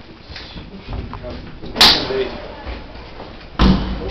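Lift doors banging: two loud knocks about two seconds apart, the second with a deep thud.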